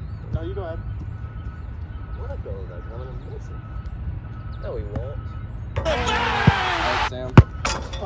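A football struck with sharp thumps near the end, the second the loudest, over a steady low rumble and faint distant shouts, with a loud shout just before the thumps.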